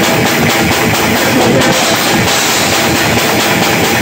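A live rock band playing loud, picked up from right behind the drum kit, so the drums, with their steady run of strikes, sit at the front over guitar.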